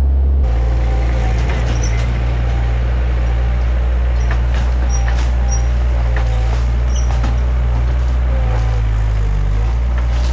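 Compact track loader's diesel engine running steadily under load. Scattered cracks, knocks and short squeaks come through as its grapple breaks up and shoves debris from a demolished camper.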